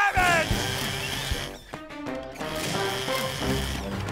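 Cartoon soundtrack: background music, with a short falling-pitch, voice-like sound right at the start and wordless character vocal sounds over the music.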